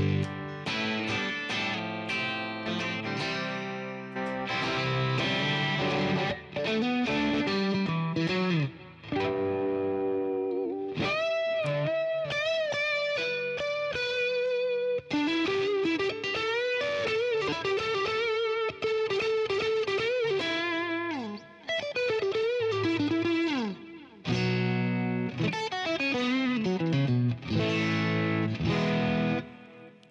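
Strat-style electric guitar played through an Axe-FX II modeller on a JTM45 amp patch, with slight breakup. Strummed chords give way to a lead line of bent notes held with vibrato through the middle, then falling runs and chords again near the end.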